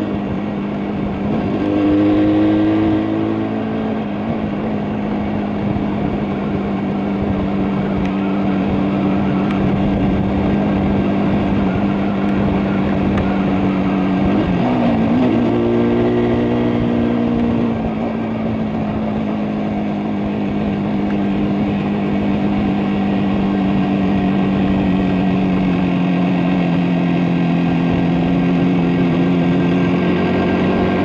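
A 1973 Yamaha RD350's air-cooled two-stroke parallel-twin engine running at a steady road speed under the rider. The revs rise briefly about two seconds in, and dip then pick up again about halfway through.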